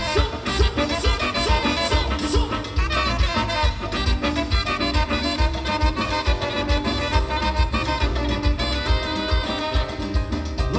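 Live tropical dance band playing an instrumental passage: saxophones, electric guitar and keyboards over a steady drum and bass beat, amplified through a PA.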